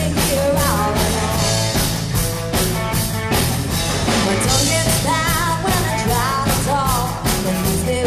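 Live rock band playing: a drum kit keeps a steady beat under electric guitar and bass, with singing over the top.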